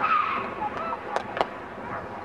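Raised young female voices calling out in a team huddle, tailing off early on, with two sharp clacks a quarter second apart about a second in.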